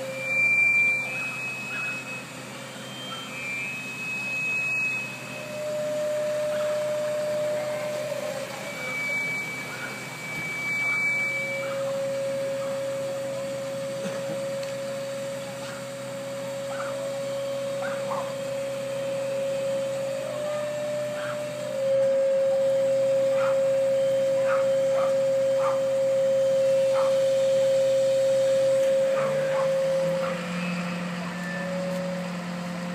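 Fire truck's aerial ladder at work: a steady low machine hum with long, steady tones above it. A high tone comes in short spells during the first dozen seconds, then a lower tone is held for most of the rest, louder in the last third.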